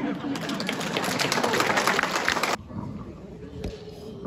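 Audience applauding, a dense patter of many hands clapping that cuts off abruptly about two and a half seconds in.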